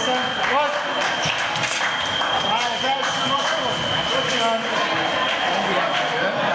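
Several people talking in a large hall, with a steady high-pitched electronic tone held through nearly the whole stretch.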